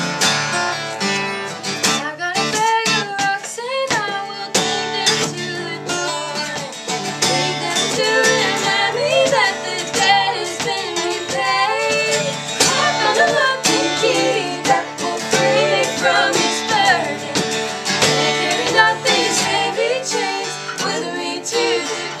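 Two acoustic guitars strumming a country song in a live unplugged performance, with a woman singing over the chords from about two seconds in.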